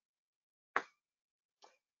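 Near silence broken by one short click a little before halfway and a fainter one near the end.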